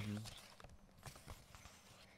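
A brief murmured 'mm-hmm', then faint scattered clicks and light rustles of paper question cards being flipped and handled by hand.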